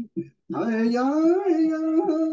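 A voice singing long held notes: after a short break for breath near the start, the pitch rises slowly, then dips and settles.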